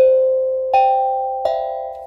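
A three-note chime: three bell-like tones struck about three-quarters of a second apart, each ringing on and slowly fading, the first one loudest.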